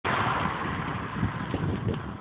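Wind and road noise from a vehicle moving at cycling speed, a steady rush with uneven low buffeting on the microphone.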